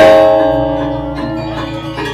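Balinese gamelan music for the Rejang dance: a loud stroke of the bronze metallophones right at the start, ringing on and slowly dying away, with softer notes continuing under it.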